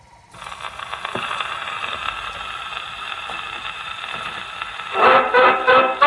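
Steady surface hiss and crackle from a shellac 78 rpm record playing on a gramophone, the needle running in the groove before the music begins. About five seconds in, a dance band comes in loudly with brass, playing a foxtrot.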